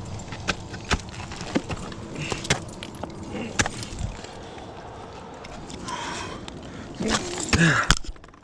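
Ice axe picks and crampon points striking water ice in sharp, irregular blows, with a louder flurry near the end. Climbing hardware clinks and jangles on the harness between the strikes.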